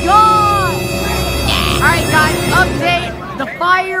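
Stadium crowd voices in the bleachers calling out in drawn-out tones that rise and fall, over a steady droning tone.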